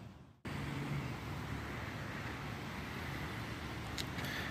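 Steady outdoor ambient noise, an even hiss with some low rumble, after a brief cut-out to silence in the first half second.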